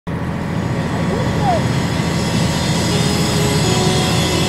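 Steady low rumble and hiss of outdoor ambient noise, with a brief faint sliding tone about one and a half seconds in.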